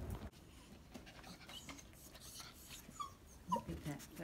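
A small dog whimpering: a few short high whines about three seconds in.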